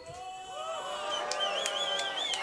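Live concert audience cheering and whooping, many voices overlapping, with a warbling whistle about a second in.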